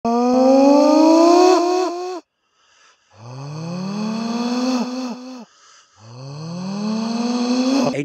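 A man's voice holding three long wordless notes, each about two seconds long and sliding slowly upward in pitch, with short pauses between; the first is pitched higher than the other two.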